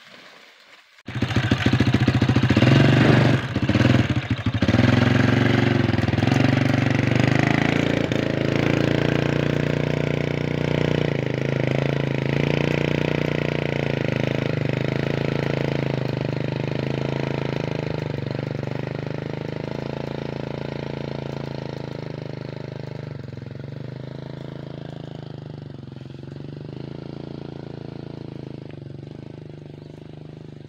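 Motorcycle engine running under a load of oil palm fruit bunches. It comes in suddenly about a second in, is loudest over the next few seconds, then slowly fades.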